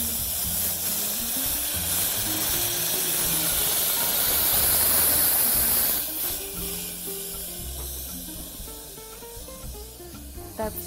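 Water poured into a hot aluminium pressure cooker pan, hissing loudly as it flashes to steam. The hiss swells to its loudest about five seconds in, drops sharply at about six seconds and then dies away.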